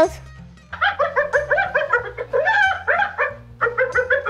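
Spotted hyena giggling: a rapid run of short, high-pitched yelping notes, about six a second, starting about a second in, then a second shorter run near the end. This laughing giggle is the sign of a nervous hyena. Soft background music runs underneath.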